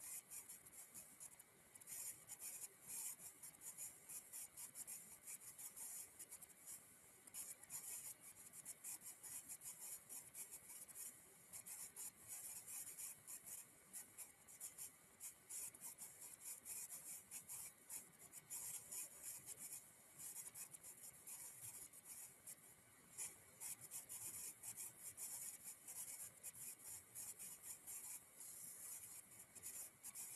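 Near silence: room tone with a faint, irregular high-pitched crackle and hiss.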